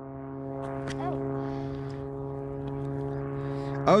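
A steady low-pitched engine drone, holding one pitch with a stack of overtones throughout.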